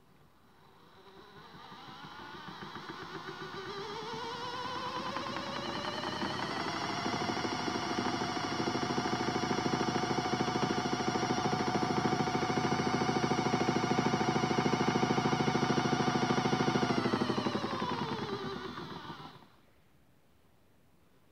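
Small electric motor of a modified Miele W1 toy washing machine turning the drum of soapy water and clothes. Its whine rises in pitch as it speeds up over the first few seconds, holds steady, then falls as it slows and cuts off shortly before the end.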